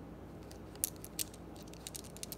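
Tumbled gemstone rune stones clicking against each other in a cupped palm as fingers pick through them: a few sharp clicks, the loudest a little under a second in and another just after, with fainter ones near the end.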